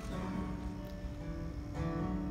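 Acoustic guitar played softly, one strummed chord near the start and another near the end, each left ringing.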